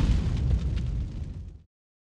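Tail of a cinematic explosion sound effect for an animated logo reveal: a low rumbling boom dying away, then cutting off to silence about a second and a half in.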